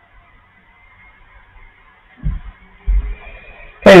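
Two dull, low thumps a little under a second apart, about halfway through, over faint steady background hiss.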